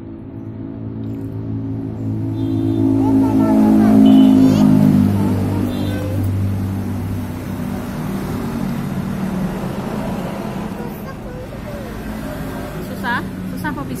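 A motor vehicle engine running close by, its hum swelling to its loudest about four seconds in and then easing off, with voices in the background.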